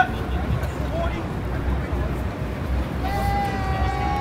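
Busy street ambience: a steady low rumble of city traffic and crowd chatter. Near the end comes one long, held, drawn-out voice.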